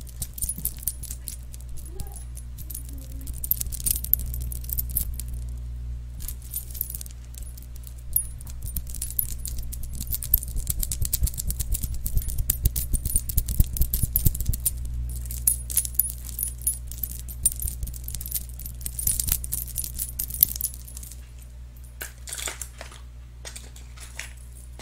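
Small metal-and-bead trinkets jingling and clicking close against a microphone in dense, crisp bursts. Near the end it thins to a few scattered clicks. A steady low hum runs underneath.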